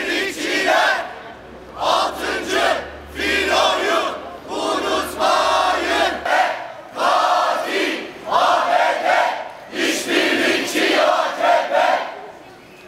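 Crowd of protesters shouting slogans together in short, loud phrases, one after another with brief gaps.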